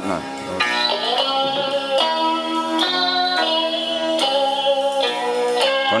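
Music playing through the speakers of a yellow National RX-F3 stereo radio cassette recorder switched over to cassette playback: sustained melodic notes over plucked strings. The pitch bends in the first second before settling.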